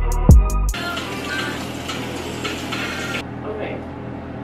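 Beat-driven music with deep bass hits and sharp ticks stops abruptly under a second in. It gives way to a steady rushing hiss of water running from a bathroom sink tap as a face is rinsed, which cuts off suddenly near the end.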